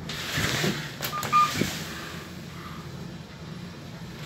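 Lift car arriving at a floor: over a steady low hum, a rush of noise and a couple of clicks, then a short electronic arrival beep about a second and a half in.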